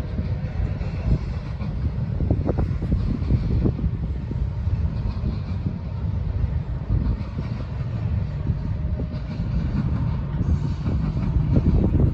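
Double-stacked container cars of a freight train rolling past: a steady low rumble of steel wheels on rail with occasional clicks.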